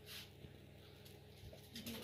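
Near silence: quiet room tone with a faint steady low hum and a few faint soft sounds.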